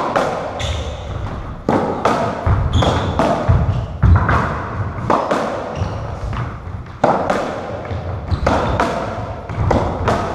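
Racketball rally on a squash court: the ball is struck by rackets and hits the walls in sharp echoing thuds, irregularly about every half-second to second, with short squeaks of court shoes on the wooden floor.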